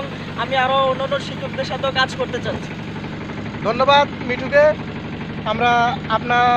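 A boat's engine running with a steady low hum beneath people talking.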